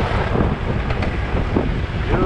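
Wind buffeting the microphone over the low rumble of a BMW F800GS motorcycle riding a dirt trail.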